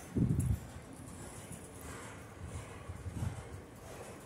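Freight train of autorack cars rolling slowly past, a faint low rumble. A brief low thump comes just after the start, and a smaller one about three seconds in.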